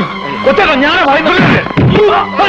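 Several men shouting and yelling over one another in a brawl, their strained voices rising and falling.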